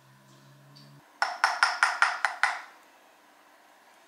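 A metal spoon clinking against a small ceramic bowl: about seven quick ringing taps in a row, each at the same pitch, a little over a second in.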